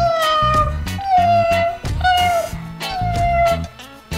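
Four cat meows about a second apart, each slightly falling in pitch, over background music with a steady beat.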